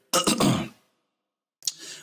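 A man clearing his throat once, briefly.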